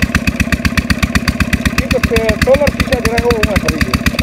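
An engine running steadily nearby, a rapid even thumping of about ten beats a second, with faint voices under it.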